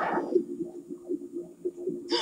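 A louder sound effect fades out in the first half-second, leaving a low, steady hum with a fluttering texture in the fight animation's soundtrack.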